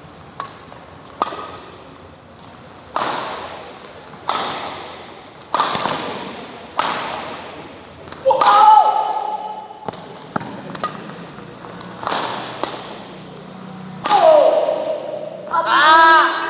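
Badminton racket strikes on a shuttlecock in a singles rally: a sharp crack every second or so, each ringing on in the hall's echo, the loudest a jump smash about eight seconds in.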